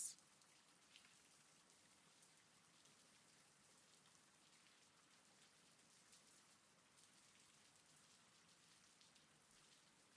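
Near silence with a faint, steady rain sound in the background.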